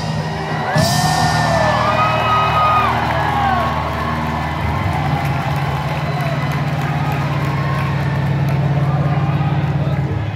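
Live rock band letting a final chord ring out at the end of a song while the crowd cheers and whoops, with a few gliding whistles in the first few seconds.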